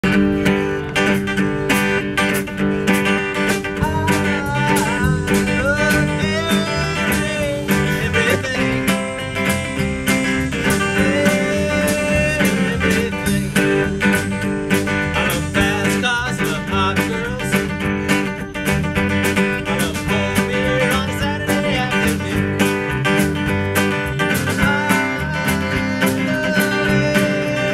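A small live band playing a country-blues tune, with a strummed acoustic guitar and a drum kit keeping a steady beat. A wavering, bending melody line runs over the top.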